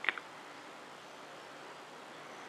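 Steady background hiss of outdoor ambience, with a short sharp chirp-like sound right at the start.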